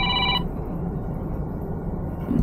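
An electronic ringtone, several steady pitches sounding together, cuts off less than half a second in. After it comes the steady low rumble of a truck cab on the move.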